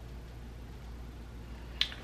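Quiet room tone with a steady low hum, broken near the end by a single short, sharp click.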